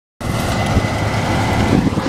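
Case IH combine harvester at work cutting wheat close by: its diesel engine and threshing machinery running as a steady, loud rumble with a faint steady high whine, cutting in just after the start.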